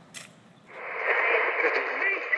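Radio-like static hiss that swells in about two-thirds of a second in and stays loud, a narrow-band crackle used as an edit transition effect. A faint click comes just before it.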